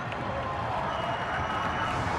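Stadium crowd cheering and applauding in a steady wash of noise, home fans celebrating a goal.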